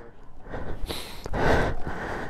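A person's hard breaths of effort, two short rushes about a second in, during a bump start of a motorcycle with a flat battery.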